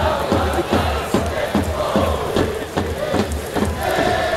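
Football supporters in a stadium stand chanting in unison, with sharp rhythmic beats of about three a second, like supporters' drums, under the chant.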